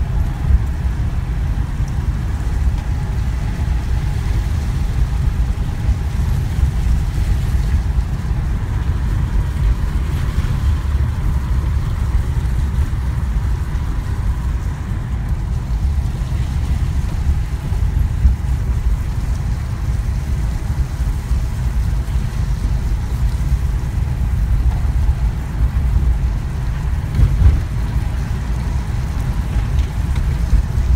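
Car driving at a steady speed, heard from inside the cabin: a continuous low rumble of engine and tyres on a rough, wet road surface.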